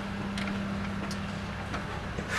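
A steady low machine hum at one held pitch, with a few faint clicks over it.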